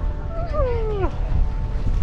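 A person's wordless cry, a drawn-out 'ooh' that falls in pitch for about half a second, over wind rumbling on the microphone in a snowstorm.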